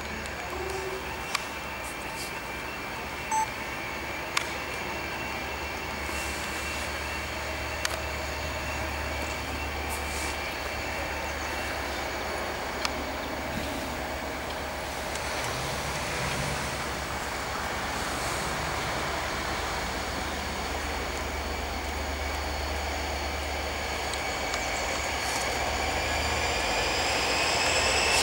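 Two Class 57 diesel locomotives approaching, their two-stroke EMD engines making a steady drone that slowly grows louder. In the last few seconds a whine rises in pitch.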